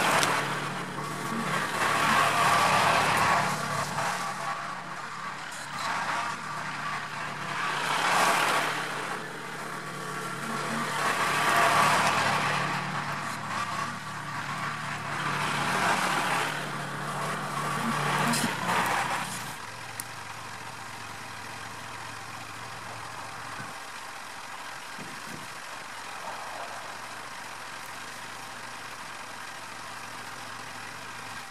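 Kubota compact tractor's diesel engine working the front loader, revving up and down repeatedly for about 19 seconds, then dropping to a steady idle.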